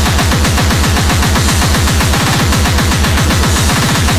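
Speedcore track: a very fast, distorted kick drum, each kick dropping in pitch, under a harsh, noisy high end.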